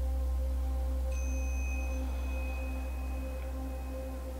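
Soft ambient background music: a steady low drone with held tones, and a high sustained tone that comes in about a second in and fades out near the end.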